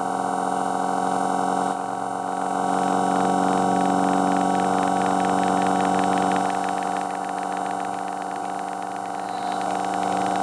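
Low-frequency test tone from a 1 Hz to 150 Hz sweep played on a Motorola Moto G Play (2023) phone, heard as a steady buzzy drone with many overtones. The tone shifts slightly twice.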